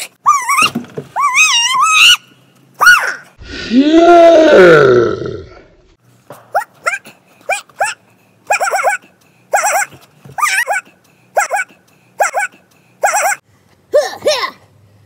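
Wavering, yelping vocal calls, then a loud growl about four seconds in, then a string of about a dozen short, bark-like calls.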